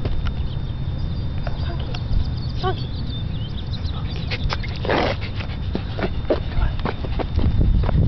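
Leashed dogs on a concrete sidewalk: scattered light clicks and jingles from collar tags and claws, a brief high whine about three seconds in and a short breathy puff about five seconds in, over a steady low rumble on the microphone.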